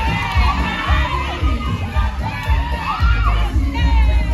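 Audience cheering, with high shouts and whoops, over loud dance music with a heavy bass beat.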